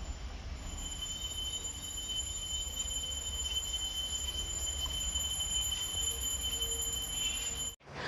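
A steady high-pitched whine made of several thin tones over a low rumble, cutting off suddenly near the end.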